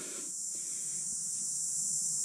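A steady high-pitched hiss, with no other distinct sound.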